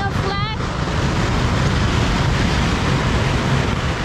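Steady rushing wind noise buffeting the microphone, heavy in the low end, with a brief voice at the very start.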